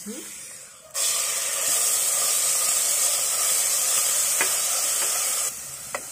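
Ginger-garlic paste, ground with vinegar, going into hot mustard oil in a frying pan. It sizzles loudly and suddenly about a second in, holds steady, and eases off shortly before the end.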